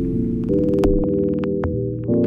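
Electronic IDM music: a held synthesizer chord over a low humming drone, moving to a new chord about a quarter of the way in, with a few sharp clicks on top.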